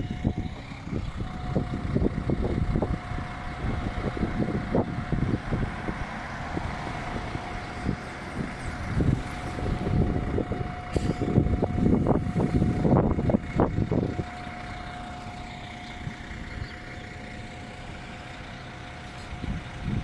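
City street traffic picked up on a phone microphone: car and bus engines, with loud, uneven low noise that eases off about fourteen seconds in. A thin steady high tone runs through most of it.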